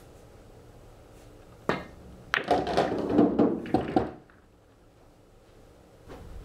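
A cue tip strikes the cue ball with a sharp click about a second and a half in, then pool balls clack together and rattle as they drop into pockets and roll through the coin-operated table's ball-return channels for about two seconds.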